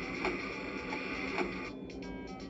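VTech Thomas & Friends Learn & Explore Laptop toy playing a short electronic jingle through its built-in speaker, with a beat a little under twice a second. The jingle cuts off near the end.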